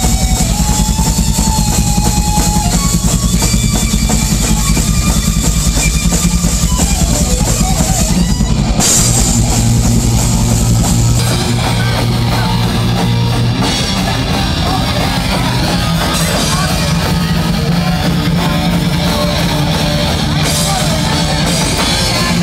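Live thrash metal band playing loud: fast drum kit with bass drum under distorted electric guitars. About halfway through the sound shifts and drops slightly in level.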